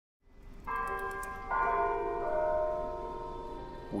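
A tram bell struck twice, the second strike under a second after the first, both ringing on and slowly fading.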